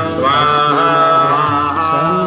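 Nepali devotional bhajan: a singing voice holding long, gliding notes over a steady accompaniment.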